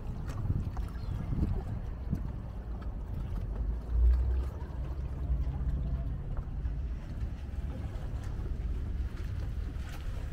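Low rumbling harbourside ambience: wind buffeting the microphone, with a strong gust about four seconds in, over the faint steady hum of a boat engine out on the river.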